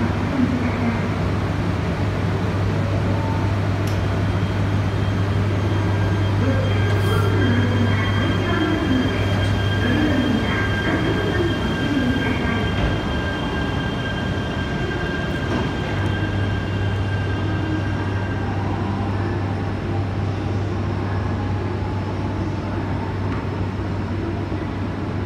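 Shinkansen train at a platform during the uncoupling of its two sets: a steady electrical hum with a high, even whine through the middle. The low hum drops out for a few seconds about halfway through.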